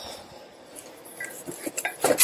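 Light metallic clinks and taps, a few scattered ones in the second half, as thick aluminum pipe bends are picked up and handled among tools.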